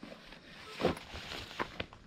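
Handling noise from a backpack being packed and swung onto the shoulders: short rustles of fabric about a second in, then a couple of sharp light clicks near the end.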